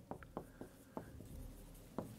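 Marker pen writing on a whiteboard: a string of faint, short strokes and ticks.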